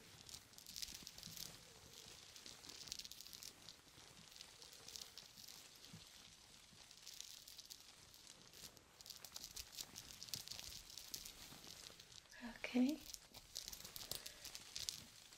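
Fingertips scratching and rubbing over a lace dress and its beaded waistband, a faint, close-up rustle that comes in short scratchy spells. A brief soft voice sound near the end.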